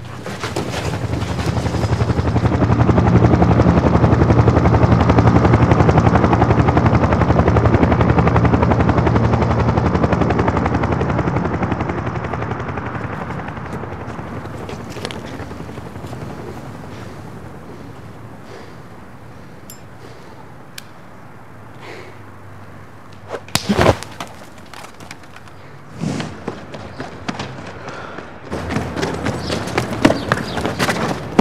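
Long stretch of rapid automatic gunfire that builds over the first few seconds, holds, then fades away over about fifteen seconds, followed by a few separate sharp cracks near the end.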